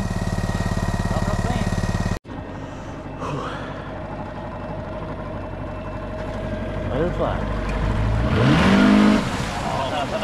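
Boat outboard motor idling, then, after a break, running underway and revving up with a rising pitch about eight seconds in as the boat speeds up.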